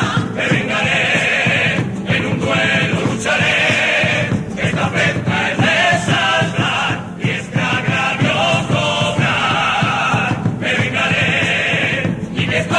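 A Cádiz carnival comparsa singing its presentation song in chorus, many voices together in phrases with short breaks between them, over instrumental accompaniment.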